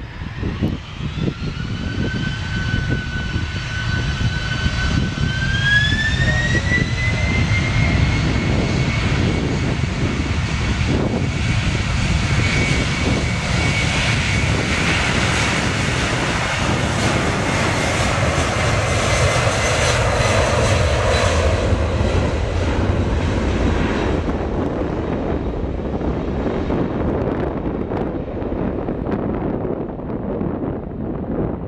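Boeing 767 freighter's twin turbofan engines spooling up to takeoff thrust, a whine climbing in pitch in two steps over the first few seconds. Then a loud steady roar as the jet runs down the runway, fading over the last several seconds.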